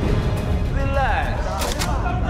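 Dramatic trailer score over a low rumble. A man's voice slides downward about a second in, and sharp impact hits follow near the end.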